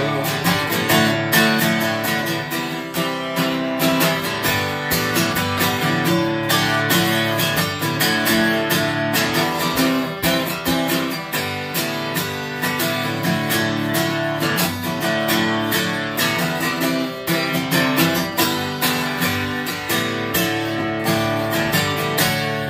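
Acoustic guitar strummed in a steady rhythm, playing a country song's chords on its own.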